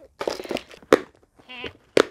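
A plastic container and plastic bags being handled: crinkling, then sharp clicks of the container's plastic lid, one just before a second in and one at the end. A brief voiced sound comes about one and a half seconds in.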